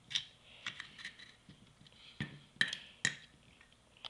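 Handling noise: a few sharp, light clicks and taps at irregular intervals, with three louder ones about half a second apart in the second half.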